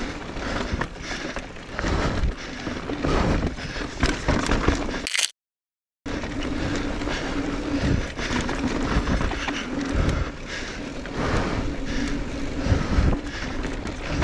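Electric mountain bike being ridden over a rough dirt and rock trail: tyres scraping and crunching on the dirt, with repeated knocks and rattles of the bike over bumps. A brief dead silence comes about five seconds in, and a steady low hum runs through most of the second half.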